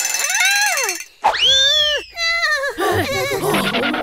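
An animated character's high-pitched cartoon screams: two long cries, each rising and then falling in pitch, followed by shorter excited yelps near the end.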